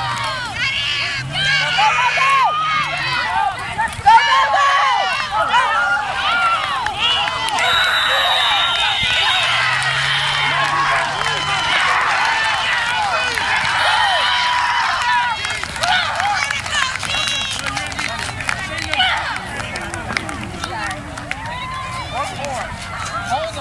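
Many overlapping voices of sideline spectators and players shouting and calling out at a youth football game, with a single sharp knock about four seconds in.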